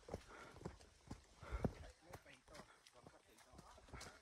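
Footsteps on a dry dirt and stony hillside trail: faint, uneven crunches and scuffs at about two steps a second.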